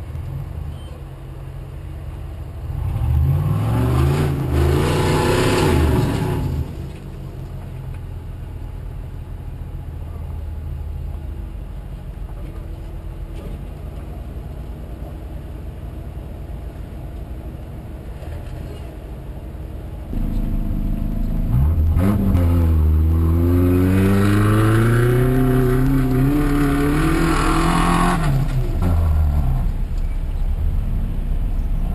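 Off-road vehicle engines revving hard in two long spells, the pitch climbing and falling as they work up a rocky slope, with an engine idling steadily in between.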